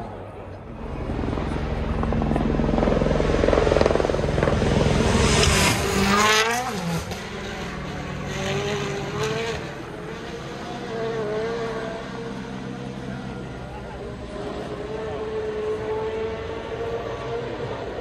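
Rally car engine coming up the gravel stage at speed, getting louder. Its note drops sharply as it passes, about six seconds in, then it fades away down the road with the pitch rising and falling through gear changes.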